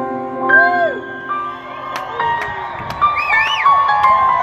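Live band playing a slow ballad, held piano chords between sung lines, with a few whoops from the audience.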